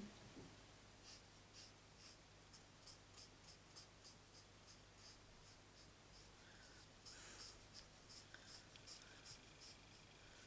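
Faint scratching of a Stampin' Blends alcohol marker's nib on card stock as liquid areas are coloured in: short strokes about two to three a second, with one longer rub about seven seconds in.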